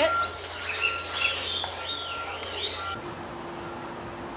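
Birds chirping and whistling, a quick run of short rising and falling calls, for about three seconds. Then the sound changes suddenly to a quieter steady low hum.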